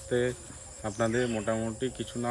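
A man talking, over a steady high-pitched drone of insects.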